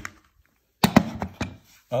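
A Glock pistol set down and shifted on a hard floor: a quick cluster of four or five knocks and clicks about a second in.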